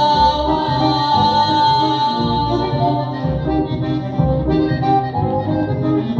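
Instrumental passage of a small acoustic band: accordion, acoustic guitar and double bass. The accordion holds one long note for the first three seconds or so over plucked double-bass notes and guitar chords.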